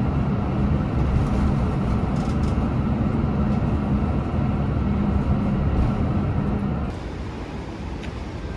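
Steady engine drone and road rumble heard inside a moving city bus, with a constant low hum. Shortly before the end it gives way to quieter street noise.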